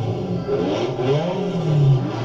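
Ferrari 308 GTB's V8 engine being revved at a standstill, its pitch rising and falling back.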